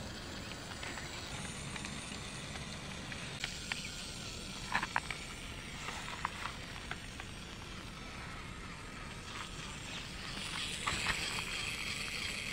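Small DC gear motor of a homemade walking robot running steadily, with scattered light clicks and scrapes as its craft-stick legs step on dirt ground.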